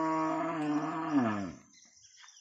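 A cow mooing: one long, steady call that drops in pitch and fades out about a second and a half in.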